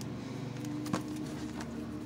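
A page in a plastic sheet protector being turned in a ring binder, with a sharp click about a second in, over a steady low hum.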